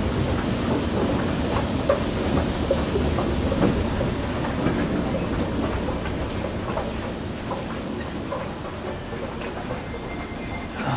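Steady low rumble and clatter of a running escalator with store background noise, slowly fading after stepping off onto the floor.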